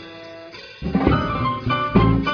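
Jazz ensemble recording: a short quiet stretch of held tones, then the full band comes back in loudly a little under a second in, with drums and electric guitar.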